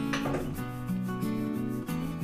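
Background music: a melody of held notes moving in steps over a light regular beat, with a brief rubbing noise just after the start.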